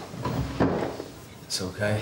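A short scrape of a chair being shifted on the floor as someone settles in at a table. Then a man's voice speaks briefly near the end.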